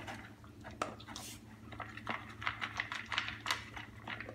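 A dog eating from a plastic bowl: a run of irregular chewing and crunching clicks, with the food knocking against the bowl.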